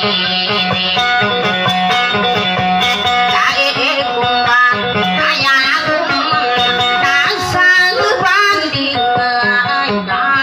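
Live dayunday music: a plucked string instrument plays a repeated melody over a steady low drone, with sliding, ornamented notes.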